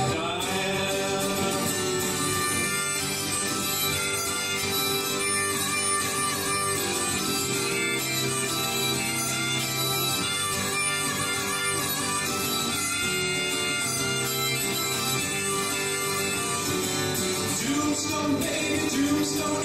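Strummed acoustic guitar with a harmonica playing long held notes over it: an instrumental break in a live folk-country song.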